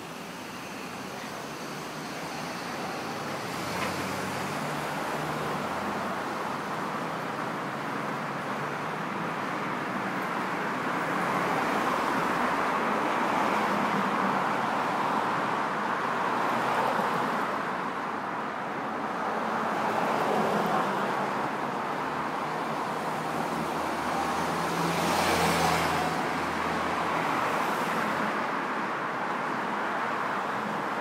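Road traffic on a city street: cars passing by, the noise swelling and fading, with louder passes around the middle and near the end.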